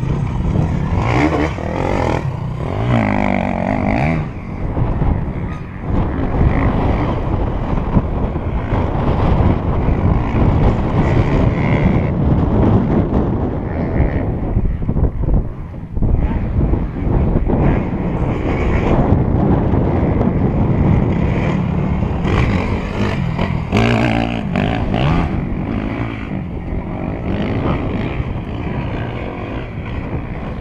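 Enduro motorcycles running on a dirt course, with engine pitch rising and falling as riders rev through the turns, loudest about two seconds in and again past the twenty-second mark. Steady wind buffets the microphone throughout.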